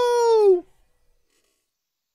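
A voice drawing out a high-pitched 'nooo', held level and then falling in pitch, ending about half a second in; silence after that.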